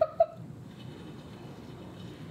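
A woman's short laugh, two quick bursts in the first quarter second, then faint room tone.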